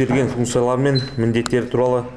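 A man speaking into a microphone, reading a speech aloud, with a single sharp click about one and a half seconds in.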